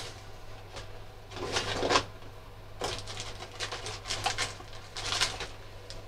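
Brief, intermittent rustling and handling sounds on a workbench, over a steady low electrical hum.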